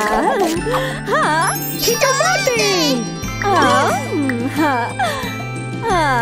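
Cheerful children's background music with a jingly, tinkling melody over steady bass notes, mixed with wordless, swooping cartoon voice sounds.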